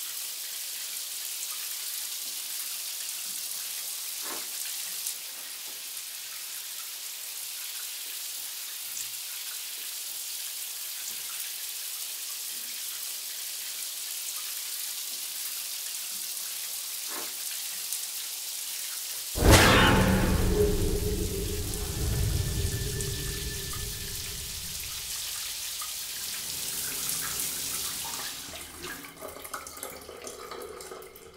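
Shower spray running with a steady hiss. About two-thirds of the way through, a sudden loud boom with a falling sweep and low rumble cuts in and dies away over several seconds. Near the end the spray stops as the shower mixer valve is turned, leaving scattered drips.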